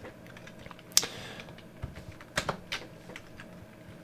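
Computer keyboard keys pressed a few times, sparse separate keystrokes with the loudest about a second in, as an expression is typed.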